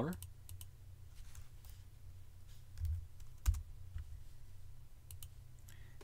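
Scattered computer keyboard keystrokes and mouse clicks: a few separate sharp clicks spread across several seconds, the loudest about halfway through, over a faint low steady hum.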